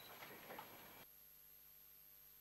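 Near silence: faint room sound that cuts off abruptly about a second in, leaving only a faint steady tone.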